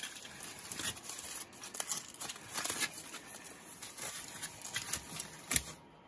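Aluminium foil crinkling and rustling as it is unwrapped by hand from a bread roll, in irregular crackles with one sharper crack near the end before it stops.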